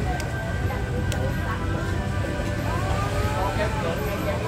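Open-air food court ambience: a steady low rumble under distant voices, with a couple of light clinks of a metal spoon and fork against a plate.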